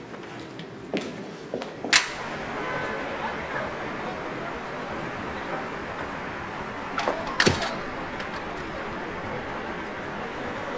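Steady outdoor street ambience, broken by a few sharp knocks about one and two seconds in and a pair of louder knocks around seven seconds, in the manner of a glass entrance door opening and swinging shut.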